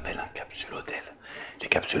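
A man whispering in French.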